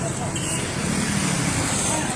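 Steady, noisy street ambience like road traffic, from a rough phone-type recording.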